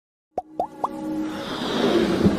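Electronic logo-intro sting: three quick pops, each rising in pitch, in the first second, then a swelling riser with a few held tones building steadily louder.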